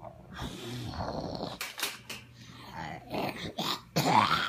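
Animal-like growling from a haunted house dark ride's spooky effects: a run of rough bursts and snarls, loudest near the end.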